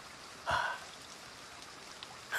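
A man's short, breathy 'ah' about half a second in, over a faint, steady background hiss.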